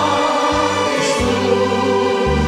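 A vocal trio of two men and a woman singing a sacred song in harmony through microphones and a PA, over a keyboard accompaniment whose bass notes step along under the held voices.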